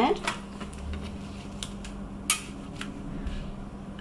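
A few sharp clicks and knocks as the magnet is pushed away and taken off the back of a polycarbonate magnetic chocolate mold, the loudest a little past the middle.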